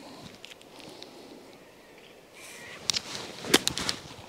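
A 60-degree wedge striking a golf ball out of the rough: one sharp click near the end, after a softer tick just before it, over quiet outdoor background.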